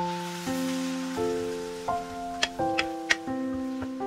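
Soft piano music plays over a hiss of water poured onto hot stir-fried glutinous rice in a non-stick pan, fading over the first couple of seconds. A few sharp clicks follow as a wooden spatula stirs the rice against the pan.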